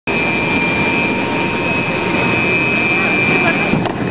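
Jet airliner turbines running on the apron: a steady, loud rush of noise with a high-pitched whine over it. The highest part of the whine drops away near the end.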